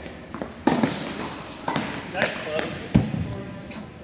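Tennis ball struck by rackets and bouncing on an indoor hard court, a few sharp knocks echoing in the hall, the loudest about three seconds in. A sneaker gives a short high squeak on the court in between.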